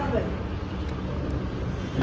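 Steady low rumble of room background noise, with the tail of a voice at the very start; no clank of the dumbbells is heard.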